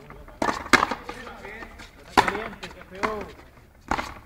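Frontenis ball struck hard by racquets and off the frontón wall during play: four sharp cracks, two close together near the start, then two more about a second apart.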